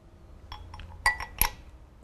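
A few light metallic clinks from hand tools and metal engine parts being handled; the two sharpest come a little after the first second, one with a short ring.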